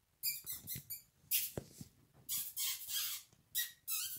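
Three-week-old Yorkshire terrier puppies squeaking as they play-fight, a quick run of short, high-pitched squeaks and yelps that starts just after the beginning.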